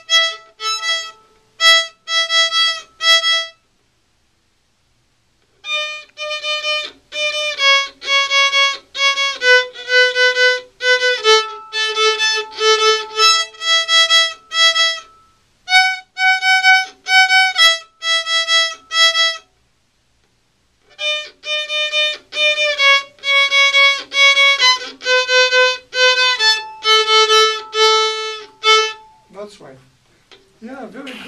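Violin played by a beginner in her first lesson: a simple melody in short, separate bow strokes, each note stopped before the next, stepping up and down in pitch. It breaks off twice, for a second or two, about four seconds in and near the middle.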